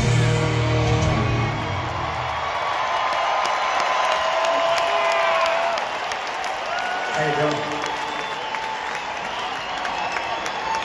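A rock band's last chord rings out and fades over the first two seconds. After that an arena crowd cheers, whoops and applauds.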